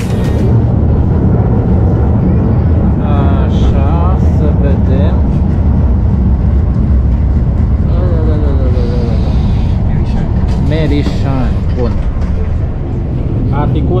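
Malaxa diesel railcar running along the line, heard from inside the passenger cabin as a loud, steady low rumble. Indistinct voices come and go over it several times.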